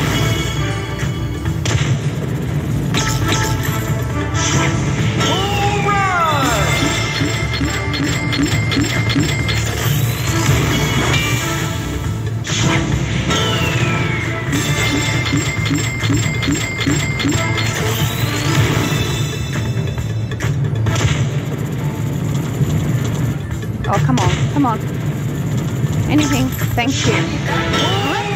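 Konami Aztec Empire poker machine playing its bonus-feature music and effects, with a falling swoop about three seconds in and again about thirteen seconds in.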